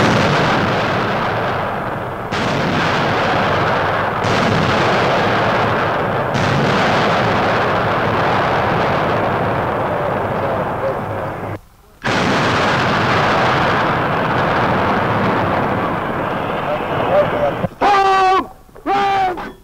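Heavy artillery firing and shells bursting in a dense, continuous din of gunfire, with fresh blasts about two, four and six seconds in. The din drops out briefly a little before twelve seconds, then resumes.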